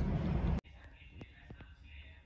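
Steady low rumble of an airliner's jet engines passing overhead, cut off abruptly about half a second in; after it, quiet with a faint whispering voice and a few light clicks.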